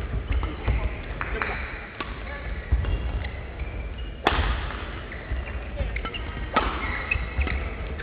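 Sports-hall sound between badminton points: background voices, with a few sharp, echoing smacks of shuttlecock hits. The loudest come about four and six and a half seconds in.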